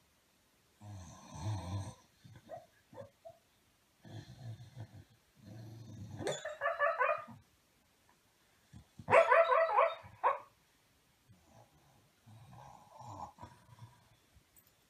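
A Staffordshire bull terrier vocalising: spells of rough, low grunting breaths, and two louder, higher-pitched drawn-out calls, about six and nine seconds in, the second the loudest.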